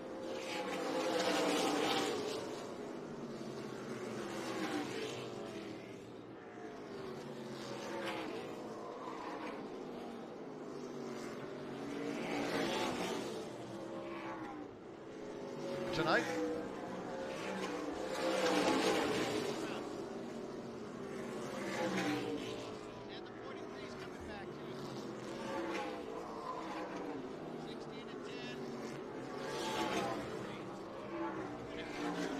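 A pack of NASCAR K&N Pro Series West V8 stock cars racing past, their engines rising and falling in pitch as they accelerate and brake through the turns, the sound swelling in waves every few seconds as cars go by.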